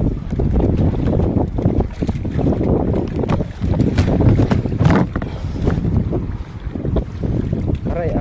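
Wind buffeting the microphone on a small boat at sea: a dense low rumble that rises and falls. Two short, sharp sounds come about four and five seconds in.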